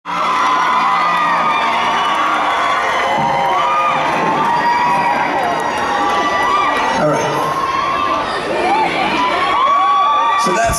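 Large concert crowd cheering and screaming, with many overlapping high-pitched voices, after a song ends.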